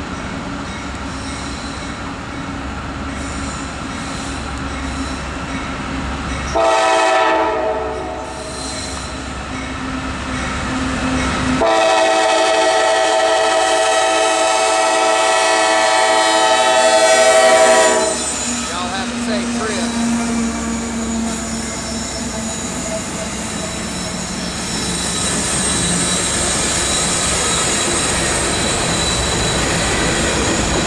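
A CSX freight locomotive's air horn sounds twice: a short chord about seven seconds in, then a long one held for about six seconds. Between and after the blasts, the diesel locomotives of the empty coal train run steadily, growing louder as they pass close near the end.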